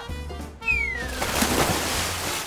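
A splash as a person plunges into a swimming pool, in the second half, just after a single whistle sliding down in pitch. Background music with a steady low beat runs under it.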